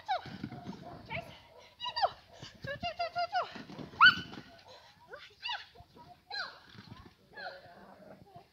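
A small dog barking and yapping excitedly during an agility run, in quick strings of short high calls, mixed with the handler's short voice cues. The loudest bark comes about four seconds in.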